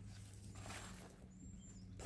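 Quiet outdoor background: a faint steady low hum, with two brief, faint, high-pitched notes, one early and one about a second and a half in.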